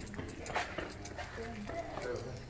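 Indistinct voices of people talking, with a few light clicks.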